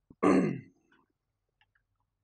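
A man clearing his throat once, briefly, a quarter second in.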